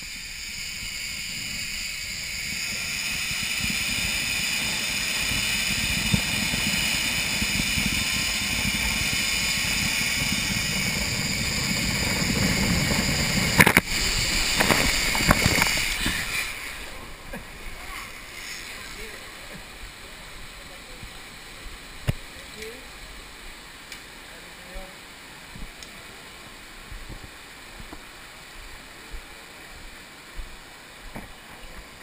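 Zip-line trolley running along the steel cable, a whine with several ringing tones over wind on the microphone, growing louder for about thirteen seconds. Then a sudden loud splash as the rider drops into the water, splashing for a couple of seconds, and after that quieter sloshing with small splashes.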